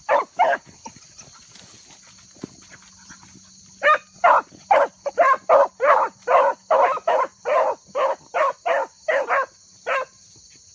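Hounds barking while running a rabbit: two quick barks at the start, then after a pause of about three seconds a steady string of barks, about two a second, to the end.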